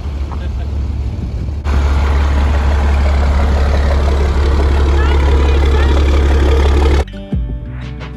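Loud rumble and wind noise of a vehicle on the move, getting louder about two seconds in and cutting off abruptly near the end, with voices mixed in. Music comes back in the last second.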